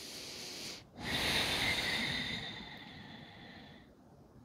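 A woman breathing slowly and deeply close to a headset microphone. There are two long breaths with a short gap between them; the second is louder and fades out near the end.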